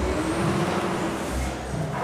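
A passing road vehicle, heard as a rushing hiss that swells and fades away near the end, over background music with a steady bass beat.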